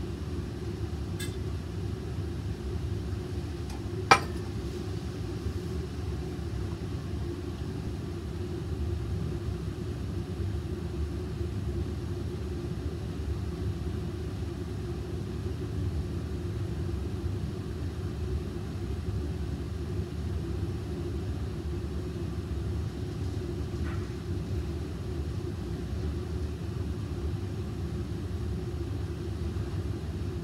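Steady low rumble of a laboratory fume hood's ventilation airflow, even throughout, with a single sharp click about four seconds in.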